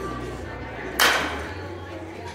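A bat hitting a pitched ball: one sharp crack about a second in, trailing off over about half a second.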